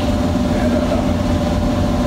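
Steady machine hum of a large fan running in the room: a low rumble with a couple of constant tones, unchanging throughout.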